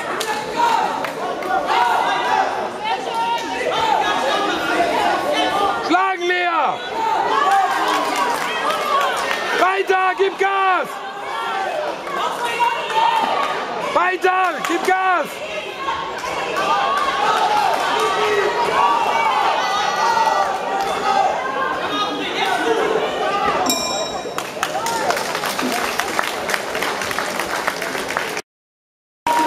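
Spectators' chatter and voices in a large hall around a boxing ring, with several long drawn-out shouts about 6, 10 and 15 seconds in. A short high ring comes near the end, the bell ending the round.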